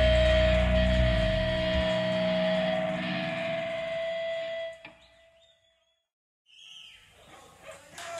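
Live metal band's final chord ringing out and fading, with one steady high tone held over it, then cutting off sharply about four and a half seconds in. A short silence follows, then faint scattered stage sounds.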